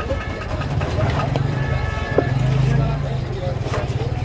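Metal spatula scraping and clinking against a large iron wok as a heap of pasta is stirred, with a few sharp clicks of metal on metal. Underneath runs a steady low rumble.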